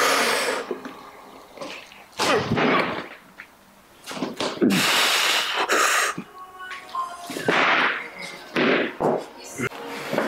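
A barbell clean and jerk with 215 lb on an Eleiko XF bar: a series of short, hard breaths and grunts of effort, and the bumper plates landing on the wooden platform near the end.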